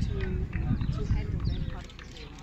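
Indistinct voices over a low rumble with scattered short knocks.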